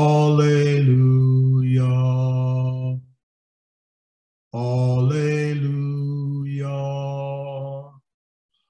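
A man's voice chanting a long, drawn-out held note twice, each lasting about three seconds on a steady low pitch while the vowel sound shifts, with a silent pause of about a second and a half between them.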